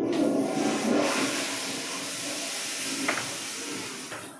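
A sudden, loud rushing hiss that sets in at once and holds steady, with a small click about three seconds in.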